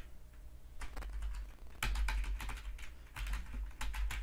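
Typing on a computer keyboard: quick runs of key clicks with short pauses between them.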